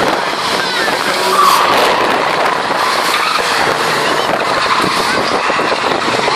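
Several race cars' engines revving as they lap and pass close by on a short oval track, the engine note rising and falling.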